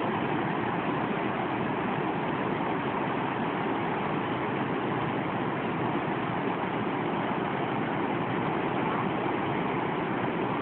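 Water rushing through the open sluices of wooden canal lock gates into the chamber below, a steady, even rush of white water as the lock is let down.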